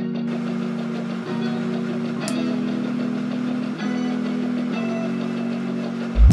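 Background music: sustained low chords that change about once a second, at a steady level.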